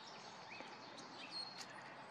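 Faint wild birdsong: a few short, thin, high chirps and whistles scattered over a quiet background.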